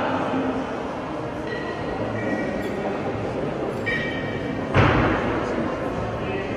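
Pair of 32 kg competition kettlebells in a lifting set: one heavy thud about five seconds in, over a busy hall background.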